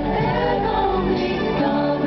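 Live band playing with several voices singing long held notes together; the bass end drops away about a second in.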